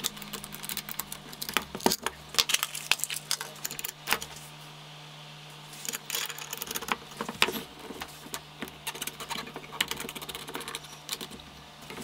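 Scattered small metallic clicks and clinks of a Veritas router plane being handled while its cutter is changed: the steel iron and its clamp and brass adjuster knocking against the plane body as the iron is loosened, taken out and another fitted. A quieter stretch about four to six seconds in.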